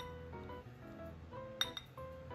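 Metal potato masher clinking against a glass bowl while mashing boiled potatoes: one sharp clink at the start and two or three more about one and a half seconds in, over background music.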